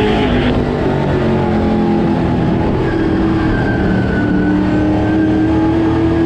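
An Outlaw Late Model race car's V8 engine heard from inside the cockpit at racing speed. Its pitch dips briefly, then climbs steadily through the second half as the throttle comes back on.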